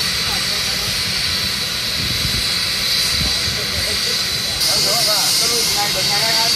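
Steady high-pitched whine and hiss of aircraft turbine engines running, the hiss stepping up louder a little before the end, with faint voices underneath.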